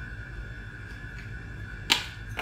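Quiet kitchen room tone with a steady faint whine, then one sharp click near the end as a spice container is handled over the pie.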